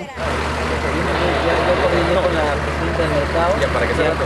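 Fire engine's motor idling with a steady low hum that cuts in suddenly just after the start, under several people talking.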